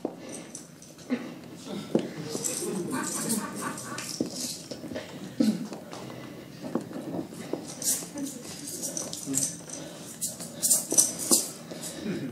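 A quiet pause on stage with no singing: scattered light clicks and knocks, more of them near the end, and faint low voices.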